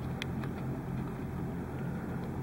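Steady low background hum with a faint even hiss, and a single faint tick about a quarter second in.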